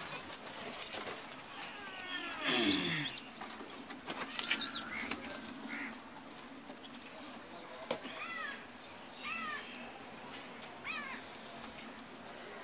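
Young pigeon squabs squeaking as they are picked up by hand, short high chirps coming in little groups, with some wing flapping and rustling.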